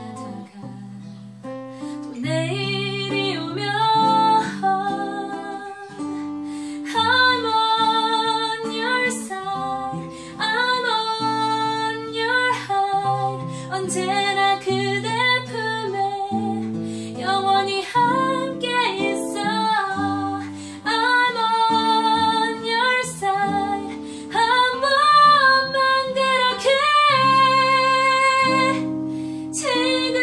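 A woman singing a pop song to a strummed acoustic guitar.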